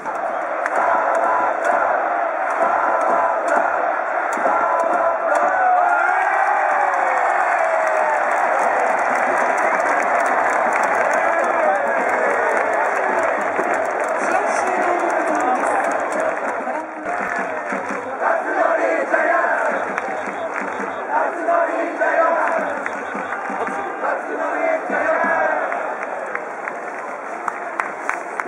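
Large baseball crowd in the stand cheering and shouting at the end of a game as the winning team's players celebrate. Short low thuds run underneath in a loose beat. The noise eases a little about two-thirds of the way through.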